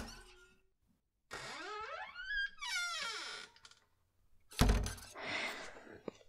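A wooden door creaking open, its hinges squeaking in several rising and falling pitch glides for about two seconds, then a heavy thud of the door shutting about four and a half seconds in, followed by softer rustling noise.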